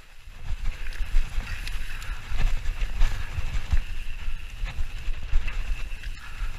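Mountain bike descending a dirt trail at speed: wind rumbling on the bike-mounted camera's microphone over tyre and drivetrain noise, with scattered small knocks and rattles as the bike goes over bumps.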